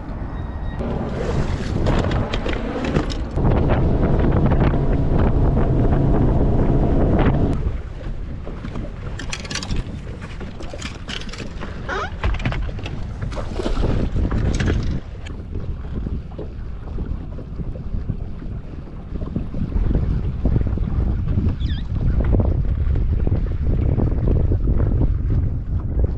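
Wind buffeting the microphone while a boat runs across open water. About three seconds in, a steady motor hum grows loud for around four seconds, then drops back to gusty wind and water noise.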